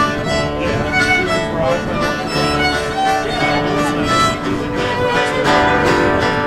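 Live acoustic folk-gospel music: a fiddle bowing the melody over a strummed acoustic guitar.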